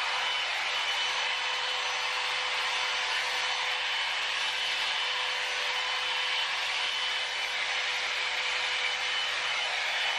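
Jinri Style 2 Go hot air styling brush running steadily, its fan blowing hot air with a faint steady whine over the rush of air as it is worked through short hair.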